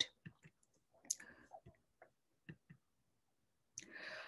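Faint, scattered clicks and ticks in a near-silent pause, with a soft breath-like hiss near the end.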